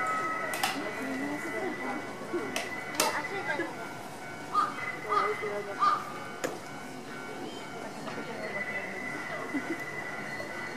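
Polar bear crunching bone fragments in its jaws: several short sharp cracks, the loudest bunched in the middle, over a steady background chatter of people's voices.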